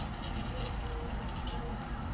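Steady low rumble of outdoor traffic coming in through an open door.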